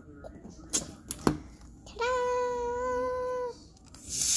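Rubber balloon squealing as air escapes through its stretched neck: one steady, level-pitched squeal lasting about a second and a half, starting about two seconds in, after a few short clicks.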